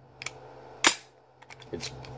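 Pistol slide being eased forward by hand: a sharp metal click about a second in, with lighter clicks before and after. The slide is dragging on the feed lips of an empty magazine that has no follower or spring.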